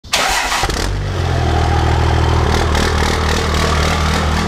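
An engine starting up: a short rough burst as it fires, then a loud, steady running note that shifts pitch a couple of times.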